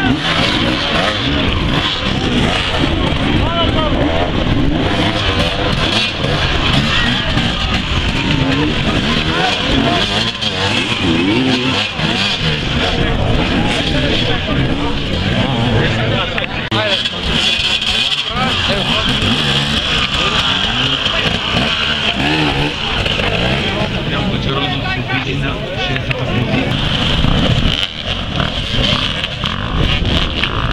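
Several enduro motorcycle engines revving hard and unevenly, their pitch repeatedly rising and falling as the bikes climb over a tyre obstacle, with spectators' voices mixed in.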